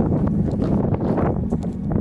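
Buzzing of a large swarm of bees at a nest in an old brick wall: a steady, dense low hum, mixed with wind on the microphone.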